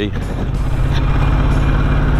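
Ducati XDiavel motorcycle engine running steadily at low city speed, heard from the rider's seat along with road noise.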